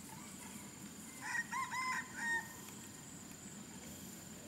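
A rooster crowing once, a call of several linked notes about a second long, starting a little over a second in.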